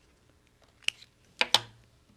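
Small scissors snipping through paper: a faint snip a little under a second in, then two sharper snips close together about halfway through, the loudest sounds here.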